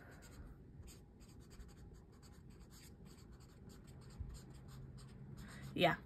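A pen writing on a lined notebook page: a faint, quick run of short scratching strokes as a line of words is written out.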